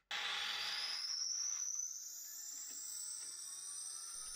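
Brushless motor spinning up a 3D-printed gyroscope flywheel. Its whine rises steadily in pitch as the disc slowly gets up to speed, with a rushing noise over the first couple of seconds.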